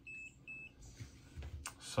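Faint electronic beeping: a short, high single-pitched beep repeated twice at the start, about 0.4 s apart, ending a run of identical beeps. After that, faint room sound.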